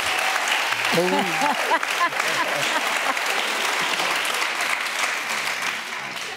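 Studio audience applauding, with a voice calling out over it for about a second early in the applause; the applause fades near the end.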